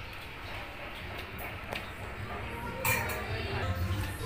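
A few light clicks and clinks as food and dishes are handled, over a low steady background, with a voice starting near the end.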